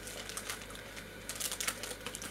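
Candy packaging, the box and tray of Peeps marshmallow chicks, crinkling as it is handled, in a few short crackles that cluster near the end.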